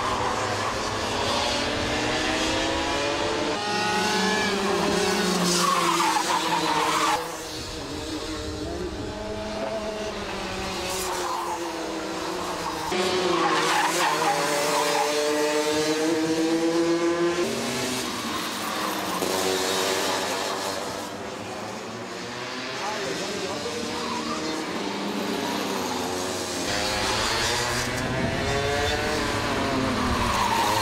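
Racing kart engines running at speed on track, several at once, their pitch rising and falling every few seconds as the karts brake and accelerate through corners and pass by.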